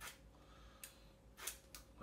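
Near silence with a few faint, short clicks of a hand vegetable peeler's blade scraping strips of peel off a lemon, about three in the second half.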